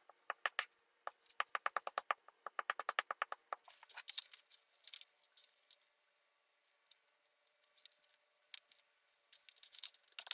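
Glue stick rubbed quickly back and forth over the back of a paper page: a fast, even run of faint scratchy strokes, about seven a second, that stops about three and a half seconds in. After that come a few light rustles and taps as the glued paper is laid down and smoothed by hand.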